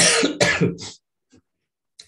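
A person clearing their throat with a short cough: three quick bursts within the first second, starting suddenly, then nothing.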